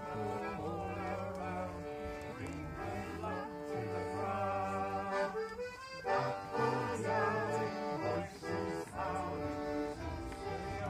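Instrumental folk tune: a melody of held notes over steady sustained bass chords, cutting in abruptly at the start.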